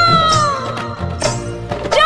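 Bhojpuri Purvi folk song: a woman's long held sung note glides down and fades out, then a short drum-led instrumental gap follows before the singing comes back in at the very end.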